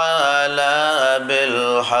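A man chanting the Arabic opening praise of an Islamic sermon in a drawn-out, melodic line, the pitch bending up and down on long held syllables.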